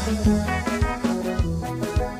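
Live Comorian wadaha band music: an instrumental passage of electric keyboard over bass and drums keeping a quick, steady beat.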